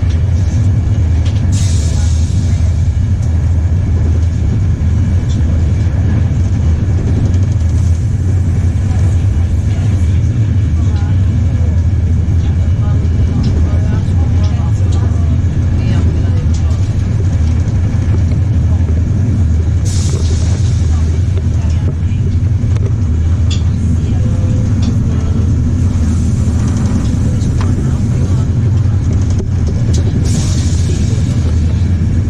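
Running noise inside an Intercity UIC-Z passenger coach travelling at speed: a steady, loud low rumble of the wheels and bogies on the track, with a few short rushes of hiss.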